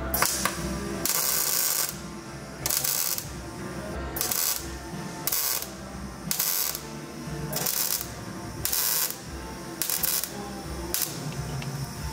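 MIG welder arc crackling in short bursts, about ten tacks roughly a second apart, each lasting around half a second, as a bead is stitched on a bit at a time.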